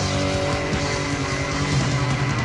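Death metal band recording: distorted electric guitars and bass sustaining notes over fast, dense drumming.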